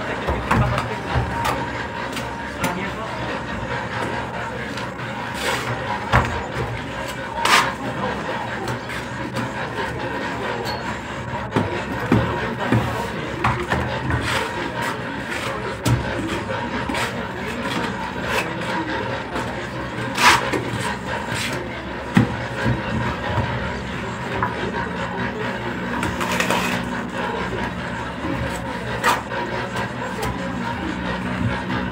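Indistinct background voices and some music over a steady noise, with a few sharp knocks scattered through it.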